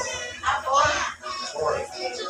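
People's voices over background music, with a short high-pitched call about half a second in.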